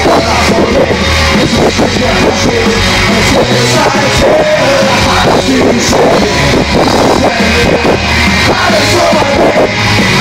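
Rock band playing live and very loud, heard from within the audience.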